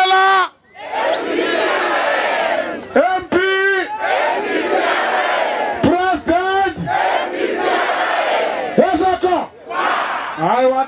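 A large rally crowd shouting and cheering in a steady roar. Loud, drawn-out shouted calls rise above it about every three seconds.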